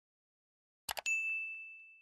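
Subscribe-button animation sound effect: two quick mouse clicks about a second in, followed at once by a single bright bell ding that rings on and slowly fades.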